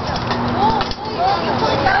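Faint voices of other people talking in the background over a steady outdoor noise.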